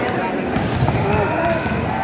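A large crowd of spectators shouting and calling out in an indoor sports hall during a volleyball rally. Several sharp hits of the volleyball come through between about half a second and a second and a half in.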